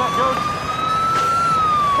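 A siren wailing: one tone rises slowly in pitch, peaks about one and a half seconds in, then falls away.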